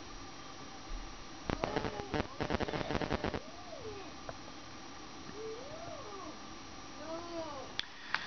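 A quick run of sharp clicks and rattles lasting about two seconds. It is followed by three short calls from an animal, each rising and then falling in pitch, about a second and a half apart.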